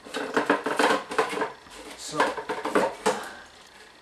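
Plastic containers and a jar being handled and moved about on a wooden board: a run of knocks and clatters in the first second and a half, and another about two to three seconds in.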